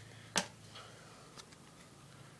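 Trading cards being handled: one sharp click about a third of a second in, and a fainter tick later.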